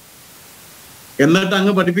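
Steady background hiss for just over a second, then a man starts speaking in Malayalam.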